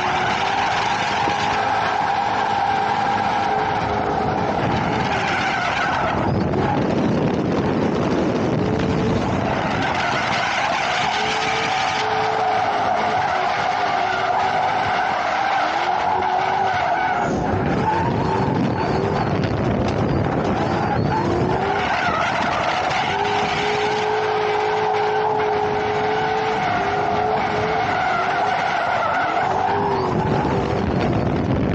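A car drifting in tight circles: tires squealing hard with the engine held at high revs, in three long stretches that ease off twice in between.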